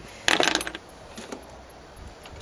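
Small metal parts clinking together in a quick jingling rattle about a quarter of a second in, lasting under half a second, followed by two faint ticks; the screws and cover plate of a car's LPG vaporizer being handled as it is taken apart.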